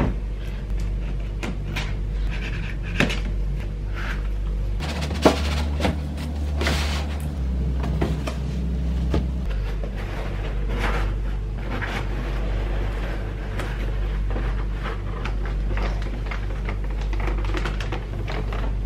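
Cardboard packaging being handled: a toy's retail box and its plain inner cardboard box turned over, slid and opened, with irregular knocks, scrapes and flap sounds, the loudest knock about five seconds in. A plastic bag rustles near the end.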